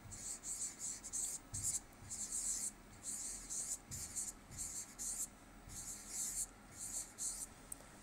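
Felt-tip marker writing on a board: a quick series of short, high, scratchy strokes with brief pauses between words.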